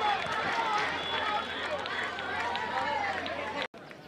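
Cricket spectators cheering and shouting, many voices at once, cut off suddenly near the end and followed by quieter open-air background.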